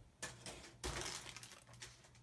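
Faint crinkling and light clicks of plastic as a model-kit sprue in its clear plastic bag is handled, with a short rustle a quarter of a second in and a longer crackly stretch from about a second in.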